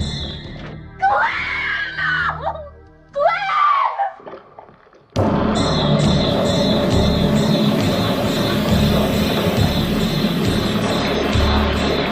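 Music dies away, then two rising-and-falling screams about a second apart, a brief hush, and a sudden loud burst of music with a steady beat from about five seconds in.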